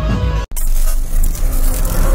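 Dhumal band music that cuts off abruptly about half a second in, followed by a loud, dense rumbling noise from an intro sound effect.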